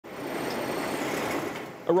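A van's engine and tyres running steadily, heard inside the cab as it rolls slowly forward: an even whirring hum that fades away shortly before the end.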